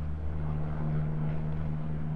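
A steady low mechanical drone with a constant deep hum and no break, like an engine running.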